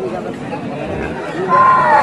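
Men's voices chattering in a crowd. Near the end a louder, high-pitched call is held briefly and falls in pitch as it ends.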